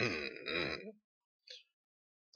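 A man clearing his throat behind his fist: one rasping, voiced sound lasting about a second.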